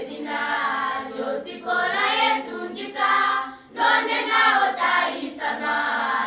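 A group of young girls singing together in chorus, with a short break between phrases near the middle.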